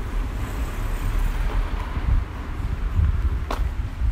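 Outdoor street ambience while walking: a low, uneven rumble, with one sharp click a little before the end.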